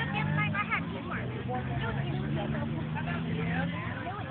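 Indistinct voices of people talking, with no clear words, over a steady low hum that fades out just before the end.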